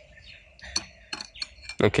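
A drinking glass clinking and scraping lightly on a wooden cutting board as its rim is worked into salt, with a few faint taps through the middle.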